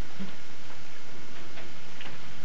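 Room tone under a steady hiss of recording noise, with a few faint, irregular clicks.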